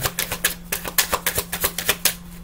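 A deck of tarot cards being shuffled by hand: a rapid, irregular run of crisp card clicks, with a faint steady hum underneath.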